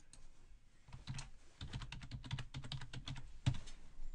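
Typing on a computer keyboard: a quick run of keystrokes, with one harder stroke near the end.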